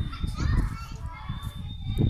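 Children's voices calling and chattering at a distance, high and brief, over a constant low rumble.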